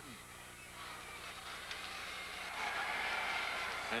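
Arena crowd noise: a steady murmur from a large hockey crowd that swells louder over the last second and a half.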